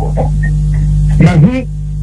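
Steady electrical mains hum in the recording, a low buzz with evenly spaced overtones, under a voice that speaks briefly at the start and again about a second in.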